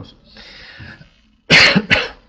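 A man coughing into his hand: a faint breath, then a loud double cough near the end.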